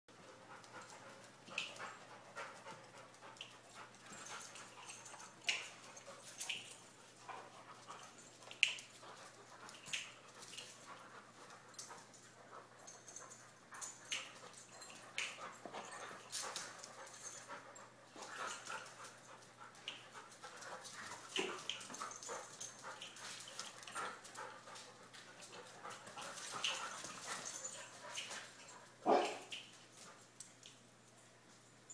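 Two dogs wrestling and fighting, with irregular short, sharp dog noises and panting throughout and one louder sound near the end.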